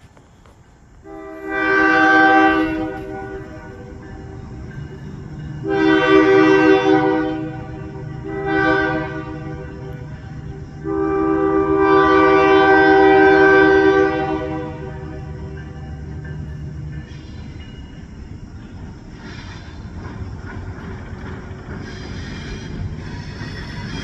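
Diesel switcher locomotive sounding its multi-chime horn in the grade-crossing pattern: two long blasts, one short and a final long one. Its engine runs underneath, and the rumble of wheels on the rails builds near the end as it approaches.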